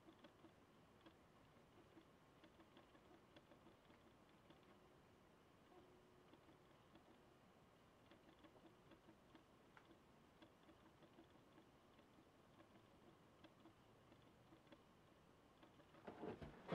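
Near silence: faint room tone with scattered small clicks of a computer mouse.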